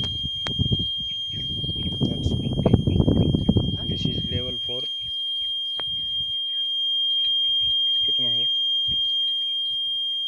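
Electronic buzzer of a groundwater level meter sounding one steady, high-pitched tone without a break, the signal that its probe, lowered down the well on a cable reel, is touching water. Voices talk over it in the first half.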